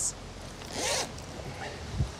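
A zipper on a camera backpack pulled open once, a short rasp about a second in.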